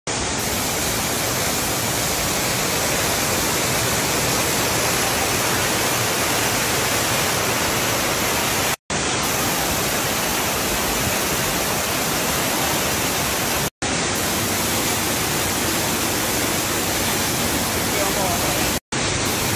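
Waterfall rushing steadily over rocks, a dense even roar of water. It cuts out twice for a split second, about nine and fourteen seconds in.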